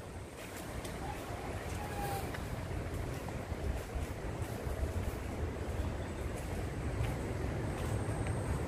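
Steady low rushing roar of a river in flood heard at a distance, growing slowly louder.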